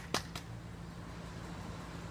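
Faint steady low background hum, with a few brief clicks in the first half-second.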